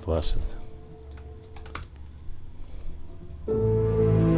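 A few computer keyboard keystrokes and clicks during editing over a faint held note; then, about three and a half seconds in, playback of the slow tension underscore starts, loud held drone and string notes.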